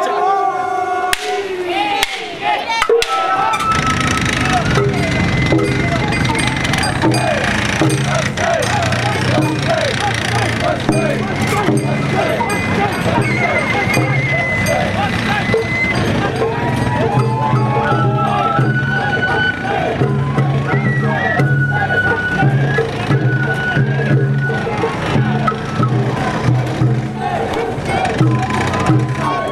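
Sawara-bayashi festival music played on the float: a bamboo flute melody stepping between held notes over a sustained low drum band, setting in about three seconds in. A crowd of voices calls and shouts around it.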